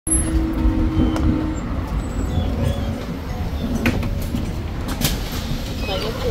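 Edison Motors Smart 093 electric city bus at close range: a low steady rumble, with a hum that stops about a second and a half in. A couple of sharp knocks come about four and five seconds in.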